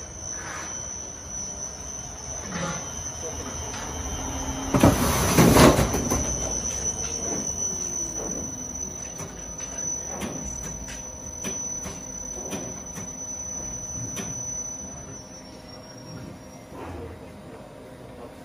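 Industrial laundry machinery running, with metallic squeals and knocks and a steady high whine that stops near the end. About five seconds in, a loud rushing hiss lasts a second or so.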